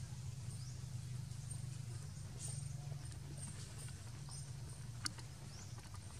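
Outdoor ambience: a steady low rumble with faint short high chirps rising in pitch every second or two, and one sharp click about five seconds in.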